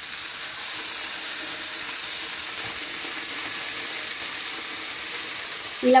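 Trout frying in olive oil in a frying pan, giving a steady, even sizzle.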